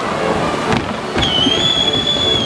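Loud, dense din of a folk dance in full swing, with dance music and dancers' feet heard as a distorted wash. A little past halfway a shrill whistle starts and is held steady.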